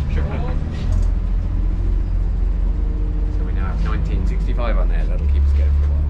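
Low, steady rumble of a King Long city bus's engine heard from inside the cabin while it drives, growing louder near the end, with brief snatches of voices over it.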